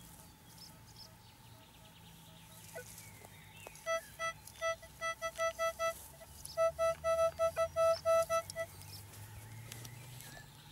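Metal detector target tone: two runs of short, quick, same-pitched beeps, about four to five a second, as the coil sweeps back and forth over a strong target. Fainter beeps of the same pitch come in the first couple of seconds.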